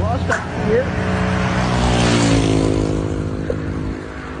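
A heavy road vehicle passing close on a highway: engine and tyre noise, with its engine note falling in pitch as it goes by.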